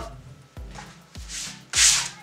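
Short rubbing scrapes of hands handling a small audio exciter against a rigid foam insulation panel, building from about halfway through to the loudest scrape near the end, over background music with a steady beat.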